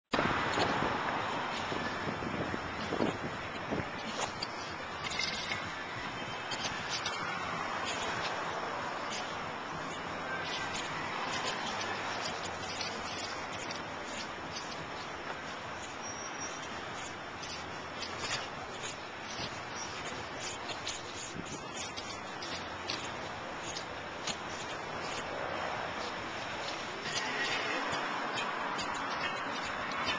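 Outdoor ambience: a steady hiss that swells and fades several times, with scattered light clicks.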